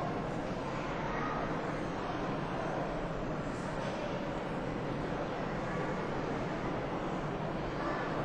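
Steady, even rushing noise with no distinct events, low and unchanging in level.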